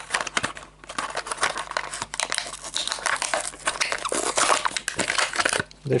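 Plastic blister pack and cardboard backing of a diecast toy car crinkling and crackling in a steady run of small clicks as the pack is torn open and the car is pulled out.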